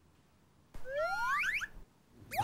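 Comic sound effect: several quick, overlapping rising whistle-like glides, starting about three quarters of a second in and lasting about a second, after near silence.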